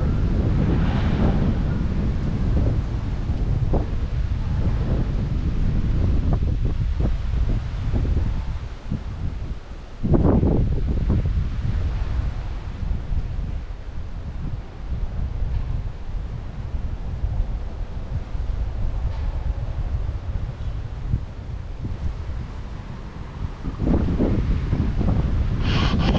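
Wind buffeting the microphone: a low rumble that rises and falls in gusts, dropping briefly about eight seconds in and coming back strongly at about ten seconds.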